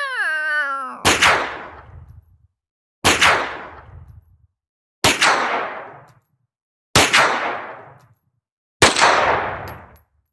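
A wavering pitched tone ends about a second in, followed by five identical crashing hits about two seconds apart, each fading away over a second or so.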